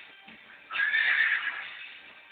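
A loud, high, wavering call lasting about a second, beginning just under a second in, heard over background music.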